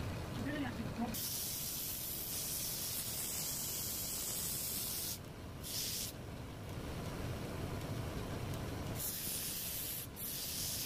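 Sanding of a wooden rolling pin spinning on a lathe: a steady hiss of the abrasive against the turning wood over the low hum of the running lathe. The hiss starts about a second in and breaks off briefly twice, once near the middle and once at the very end.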